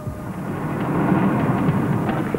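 A car's engine running as the station wagon sits at the gate, heard as a steady, noisy rumble.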